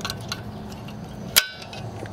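Small metal parts clinking as the clutch cable's end is worked free of the clutch lever on a Puch e50 moped engine: faint ticks, then one sharp clink with a short ring about one and a half seconds in, over a low steady hum.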